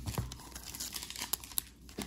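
A trading-card pack's wrapper crinkling and tearing as it is opened, in a scatter of small crackles.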